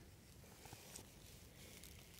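Near silence: faint outdoor background with a couple of barely audible ticks.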